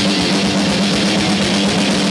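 Hardcore band playing live at full volume: distorted electric guitar, electric bass and a drum kit hit at a fast, steady pace.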